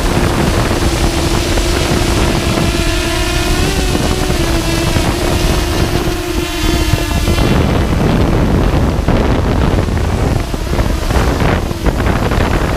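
Multirotor drone's motors and propellers whirring in flight, picked up by the onboard GoPro with heavy wind rush over the microphone. A steady motor hum wavers a little and drops away about seven and a half seconds in, leaving mostly wind and rotor noise.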